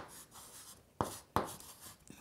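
Chalk writing on a chalkboard: faint scratching strokes, with two sharp taps of the chalk against the board about a second in.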